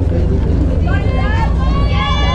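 High-pitched voices of players or spectators shouting and calling out, starting about a second in, over a steady low rumble.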